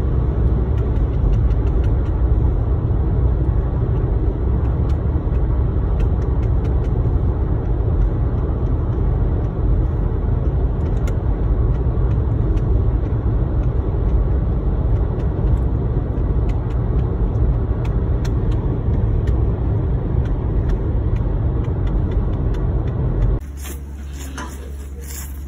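Steady road and engine noise heard inside a moving car's cabin at highway speed, heaviest in the low end. It cuts off abruptly near the end, giving way to quieter room sound.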